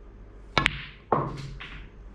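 Snooker cue striking the cue ball hard with below-centre stun, followed a split second later by the sharp click of the cue ball hitting the brown: two quick clicks about half a second in.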